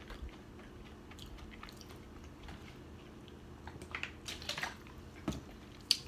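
A person chewing food with the mouth closed, faint at first, then a run of louder mouth clicks and smacks about four seconds in and a couple more single clicks near the end.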